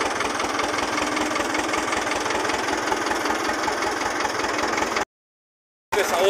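Small tractor's engine running steadily while driving, with an even low pulsing beat. The sound cuts out abruptly for just under a second near the end.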